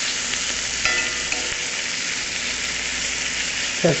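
Bacon sizzling steadily in a cast-iron skillet, with a spatula scraping and stirring it around the pan, most noticeably about a second in.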